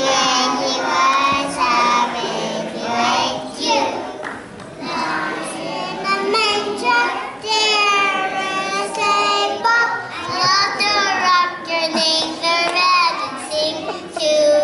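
A group of toddlers singing a song together, their young voices gliding up and down with the tune.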